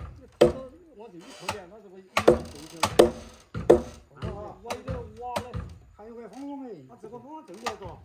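Sharp blows on timber as carpenters work on a wooden house frame, several irregular strikes in the first four seconds and another near the end, with people's voices calling out in between.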